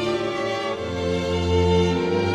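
String quartet playing held, bowed notes of a Spanish Holy Week processional march, with a low cello note entering about a second in.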